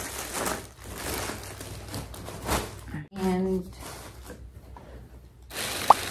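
Rustling and handling noise of items being packed into a fabric tote bag, then a plastic bag crinkling as it is pulled out near the end.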